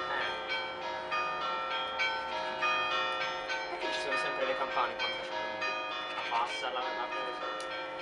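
Church bells pealing, several bells struck one after another with long ringing tones overlapping. Faint voices come through underneath in the middle.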